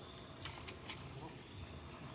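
Insects calling in a steady, high-pitched drone, with a few faint clicks about halfway through.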